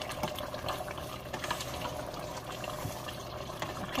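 Oxtail stew bubbling in a steel pot while a spoon stirs butter beans through it: steady wet bubbling with small clicks of the spoon.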